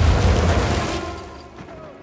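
Deep booming impact from a film soundtrack, the sound effect of a Force push throwing a person back onto the ground. It fades away over about a second and a half.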